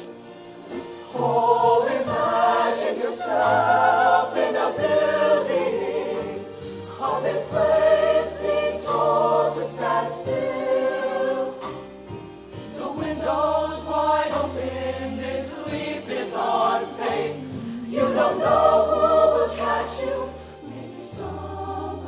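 Mixed-voice show choir singing held chords with vibrato over instrumental accompaniment with sustained bass notes, the phrases swelling and easing every few seconds.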